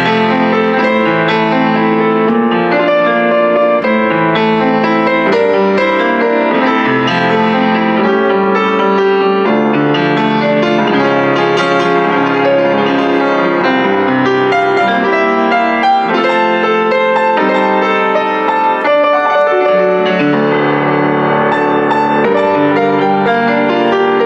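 Kemble K131 upright piano played without pause, a flowing piece of overlapping chords and melody spread across bass and treble, with the sustain carrying notes into one another.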